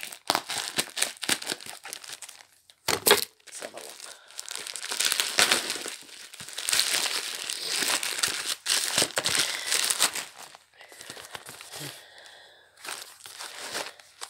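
Parcel packaging crinkling and rustling as it is cut open with scissors and torn away, with a sharp knock about three seconds in.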